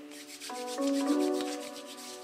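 Hands rubbing palm against palm, skin on slick skin, over soft background music with sustained, changing chords.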